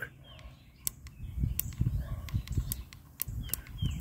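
A small handheld portable radio being handled close to the microphone: an uneven low rumble of handling noise, loudest in the middle, with several sharp clicks. A few faint bird chirps come through.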